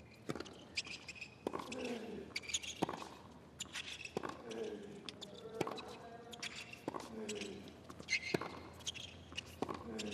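Tennis rally on a hard court: racquet strikes and ball bounces about once a second, sneakers squeaking on the surface, and short grunts from the players on some shots.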